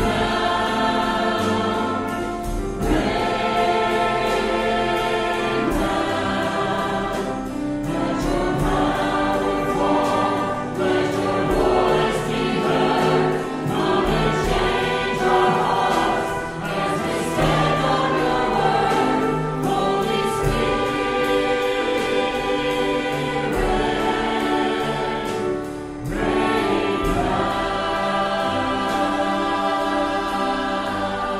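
Massed voices singing a gospel hymn with instrumental accompaniment, in long held phrases with short breaks between them.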